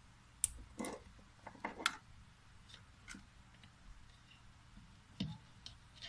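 Scattered small plastic clicks and light knocks from a wire plug connector being pushed together and a small plastic hall flow sensor being handled on a wooden tabletop. Several come in the first two seconds, and a couple more a little after five seconds.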